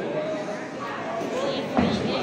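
Indistinct voices talking in a large, echoing hall, with a single thump near the end.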